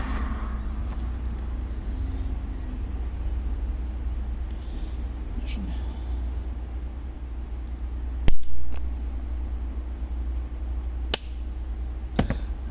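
Small cutters trimming the metal blades of a blade fuse: two sharp clicks about three seconds apart, the first much the louder, over a steady low hum.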